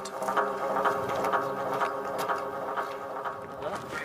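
A motor running steadily: a drone of several evenly spaced held tones, with a few light clicks over it.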